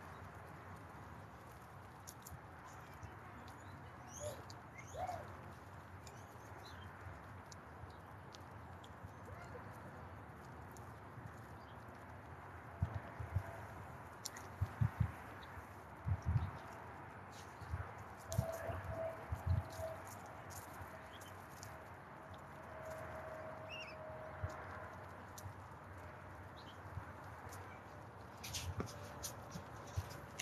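A large group of guinea pigs feeding on the ground, with faint munching and rustling. A few short high calls come about four seconds in, and several dull knocks sound around the middle.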